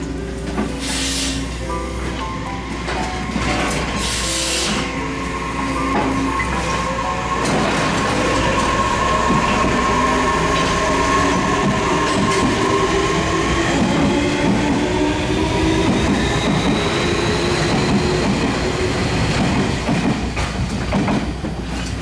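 Tobu 60000-series electric train pulling out of the station: its motors whine in several tones that rise steadily in pitch as it accelerates, over the rumble of the cars rolling past. Music plays over the first few seconds.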